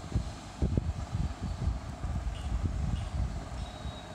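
Low, uneven rumble of noise on the microphone, with irregular swells.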